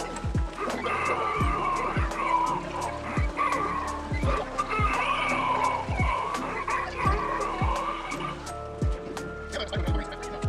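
Spooky music with deep drum hits, roughly one or two a second, over held tones. A wavering, wailing sound rises over it from about a second in and stops shortly before the end.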